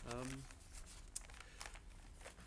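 A man's brief 'um', then faint crinkling and scattered light clicks of papers being handled at a lectern, close to its microphone.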